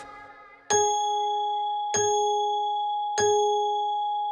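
A clock bell striking three times, about a second and a quarter apart, each stroke ringing on and slowly fading: part of the clock striking five o'clock.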